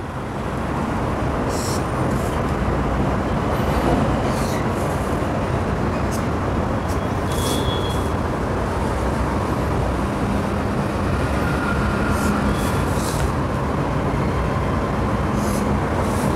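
Steady road-traffic noise that rises about a second in and holds, with a few faint light ticks over it.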